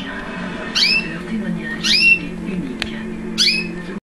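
Red-factor canary chirping in three short bursts about a second apart, each a quick run of high gliding notes, over a low steady hum.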